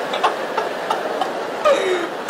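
Stand-up comedy audience laughing and clapping: a steady crowd roar with scattered individual claps.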